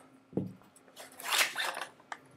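Parts of a partly stripped CETME C2 submachine gun being handled: a light click, then a short scraping slide around the middle, and another click near the end.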